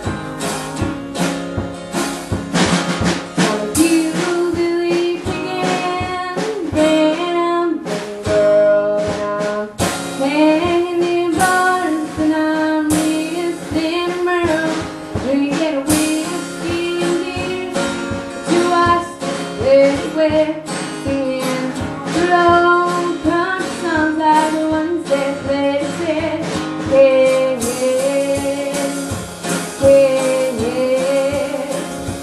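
A woman singing a country song live, accompanying herself on a strummed acoustic guitar, with a drum kit keeping a beat behind her.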